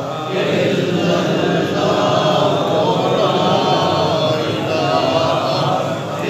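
A group of men chanting a devotional recitation together, many voices overlapping in one continuous chant.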